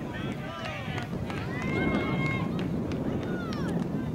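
Overlapping shouts and calls from many voices at a youth baseball game, too jumbled to make out as words, with one long, high, held call about a second and a half in.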